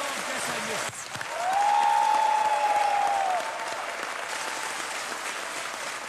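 Studio audience applauding, with a drawn-out voice held over the clapping for about two seconds, starting just after a second in.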